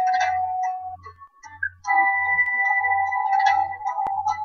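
Slow ballad music: a held note that stops about a second in, then another held chord from about two seconds, over a soft low beat about every two-thirds of a second.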